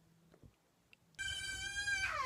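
Near silence for about a second, then a woman's long, high-pitched scream held on one pitch.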